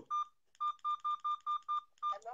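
A phone's electronic beep tone: one short high beep, then a rapid run of about seven identical short beeps at one steady pitch, roughly five a second, heard as a live call is being picked up.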